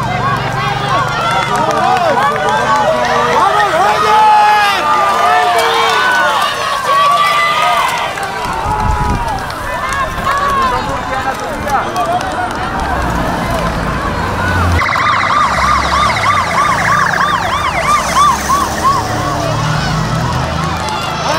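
Police motorcycle sirens sounding, several overlapping rising and falling wails, with spectators' voices mixed in. About fifteen seconds in, a siren switches to a fast repeating yelp.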